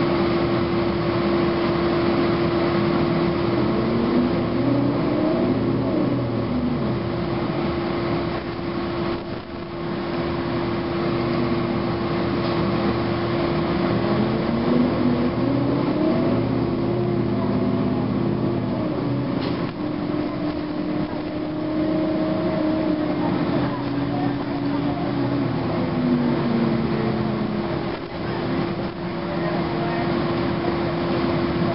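Cabin sound of a 2009 Gillig Advantage low-floor transit bus under way: its Cummins ISM diesel engine and Voith transmission climb and fall in pitch several times as the bus speeds up and slows. A steady whine runs underneath.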